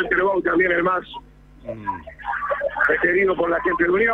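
Speech only: voices talking, with a pause of about a second in the first half.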